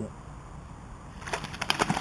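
Hooked pike thrashing and splashing at the water's surface while being played on a rod, heard as a quick run of sharp splashes starting about a second and a half in.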